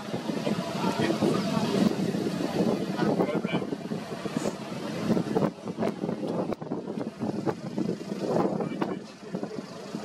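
Low, indistinct voices inside a car over a steady vehicle engine idle, with scattered clicks and knocks from handling.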